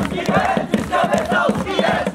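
A group of male voices shouting and chanting together, loud and without a break.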